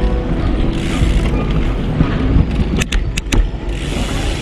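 Steady low rumble of wind and road noise on a moving bike-mounted action camera, with background music trailing off at the start. A few sharp clicks come about three seconds in.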